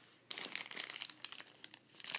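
Clear plastic packaging crinkling as it is handled by hand: a dense run of crackles starting about a third of a second in, then scattered ones.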